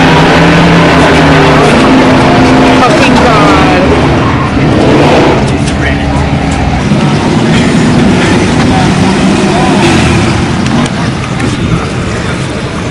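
Loud race-car engine noise on a drag strip, mixed with people's voices.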